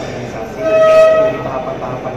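A loud, steady pitched tone with overtones, held for under a second near the middle, over a man talking.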